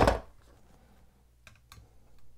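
A knife set down with a knock at the start, then two light clicks about a second and a half in as a chef's knife is laid on a small digital kitchen scale.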